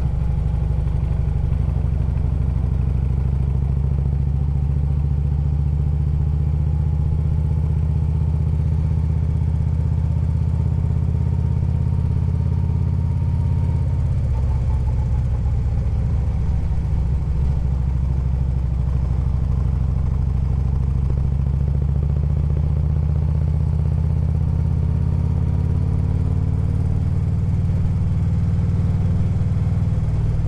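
Harley-Davidson Road Glide's V-twin engine running steadily under way, its note dipping about halfway through and climbing again.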